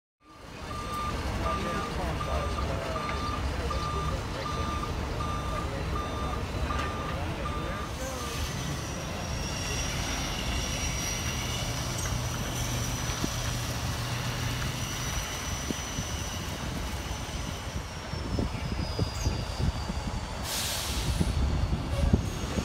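Heavy diesel semi tractor running as it hauls a loaded lowboy trailer, with a backup alarm beeping about one and a half times a second for the first eight seconds. A high whine runs through the middle and falls slightly in pitch, and a short hiss comes near the end.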